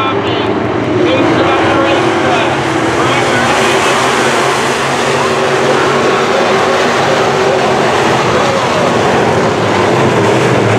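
Several sport modified dirt-track race cars racing at speed, their engines running hard in a steady, loud, continuous sound.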